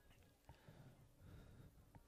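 Near silence: faint outdoor background murmur with two soft clicks.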